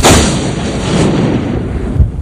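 Logo-animation sound effect: a sudden loud burst of noise that fades away over about two seconds, over a steady low rumble.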